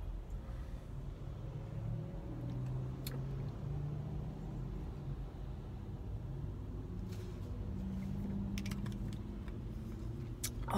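A car's engine idling, heard inside the cabin while the car stands at a traffic light: a low, steady hum. There is a faint click about three seconds in and a few more clicks near the end.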